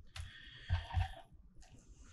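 Faint wet squishing of raw Muscovy duck meat being handled, with a few soft thumps as a cut is laid down on a wooden cutting board, mostly in the first second or so.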